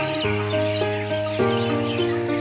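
Background music: sustained chords that change about a quarter second in and again a little past halfway.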